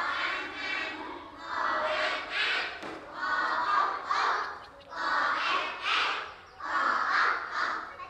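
A class of young children chanting a lesson aloud in unison, in loud phrases of about a second each with short breaks between them.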